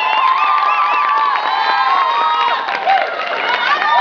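Audience cheering and whooping: many voices shouting at once, easing slightly after about two and a half seconds.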